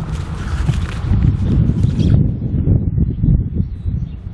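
Footsteps swishing and thudding through low leafy crop plants, with a low rumble of wind buffeting the microphone; the brushy rustle of the plants fades out about two seconds in.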